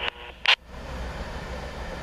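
A short burst of scanner-radio squelch about half a second in, as a railroad defect detector's broadcast ends, then the steady rolling rumble of a CSX freight train moving away down the track.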